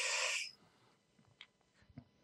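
A person's short breathy exhale lasting about half a second, then near silence broken by two faint clicks.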